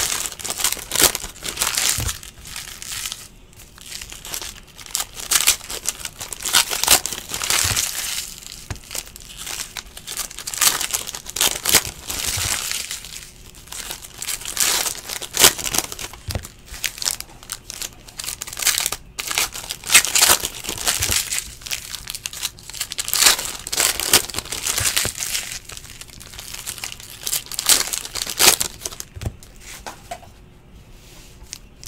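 Trading-card packs being torn open and their shiny plastic wrappers crinkled, in irregular bursts of crackling all through, with cards handled and stacked in between.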